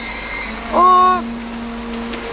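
A steady machine hum holding a constant pitch. About a second in, a person makes one short, held voiced sound over it.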